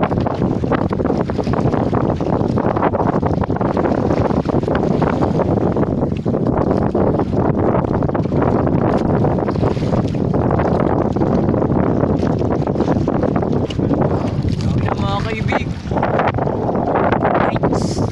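Steady wind rumbling on the microphone on a small fishing boat at sea. A short voice-like sound rises and falls about three quarters of the way through.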